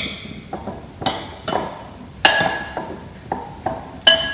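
A utensil clinking against a glass mixing bowl as baby carrots are stirred in oil and seasoning: a handful of irregular clinks, the loudest a little past two seconds in.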